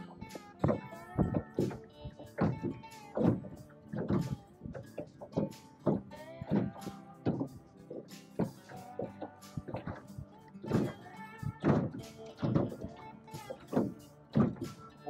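Background music made of short, struck notes with sustained tones between them.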